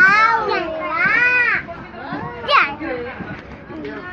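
Young children's high-pitched voices, long rising-and-falling calls and squeals with no clear words, loudest near the start and again about two and a half seconds in.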